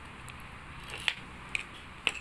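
A few light, sharp clicks from a Proton Savvy's metal wiper linkage being handled as its clip-on link joint is worked loose; the loudest click comes about a second in.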